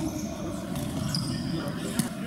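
Futsal match in play in a reverberant sports hall: a ball thudding on the court floor and players' voices, with a brief high squeak a little past the middle and a sharp thud at the very end.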